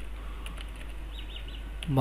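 A few quick, faint computer keyboard keystrokes, about four in a row around the middle, as a short word is typed. Under them is a steady low electrical hum with faint hiss.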